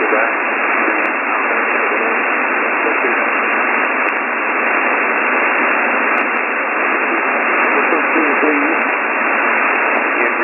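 Steady shortwave static hiss from a software-defined radio in upper-sideband mode, with the station's preaching voice faded down under the noise and surfacing faintly about eight seconds in.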